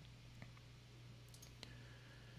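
Near silence: room tone with a steady faint hum and a few faint clicks, one about half a second in and another past a second and a half.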